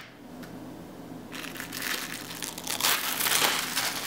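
Clear plastic film being peeled back off a frozen-dinner tray, crinkling. It starts about a second in and is loudest near the end.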